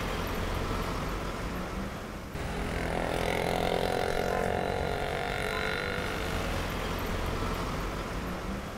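City street traffic: a steady rumble and hiss of motor vehicles on a wet road. It dips briefly a couple of seconds in, then comes back fuller.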